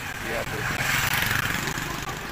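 A motor vehicle passing by, its engine and road noise swelling to a peak about a second in and then fading, over a steady low rumble.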